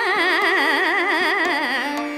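Hindustani khayal singing: a female voice holds a note with a wide, quick shake of about five times a second, then slides down near the end. A steady tanpura and harmonium drone sounds beneath.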